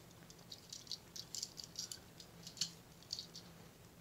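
Light clicks and rattles of a small diecast model car being handled in the fingers and set down among other models, a scatter of quick small ticks for about three seconds.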